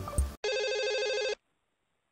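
A telephone ringing: a single ring of about a second that cuts off abruptly, followed by silence until the call is answered.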